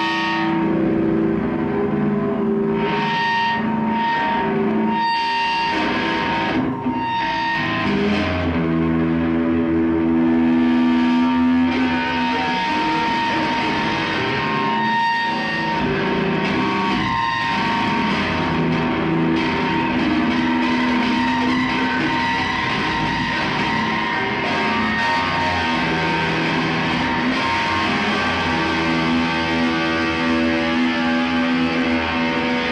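Electric guitar played live through an amplifier, with long held notes layered over one another and a high steady tone that holds through much of the passage.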